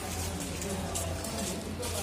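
Indistinct background voices over a steady low hum, with a few light clicks.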